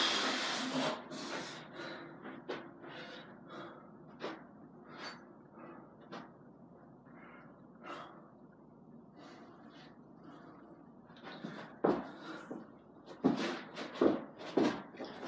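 A man breathing hard in short, repeated puffs after exertion from burpees, louder at the start and again near the end as he starts the next one.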